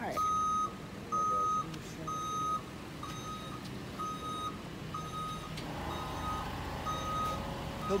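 A vehicle's reversing alarm beeping steadily about once a second, each beep a half-second tone, loud at first and then fainter. A vehicle engine runs underneath and grows louder near the end.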